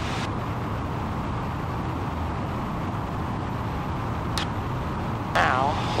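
Light aircraft's piston engine and propeller droning steadily at cruise power of about 2,500 RPM, mixed with airflow noise. There is a brief click about four and a half seconds in, and a voice starts near the end.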